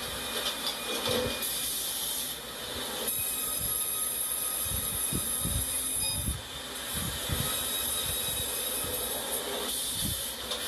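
Sawmill log-processing machinery running: a steady high hiss over the machine noise, with a run of low knocks and thuds about five to seven and a half seconds in.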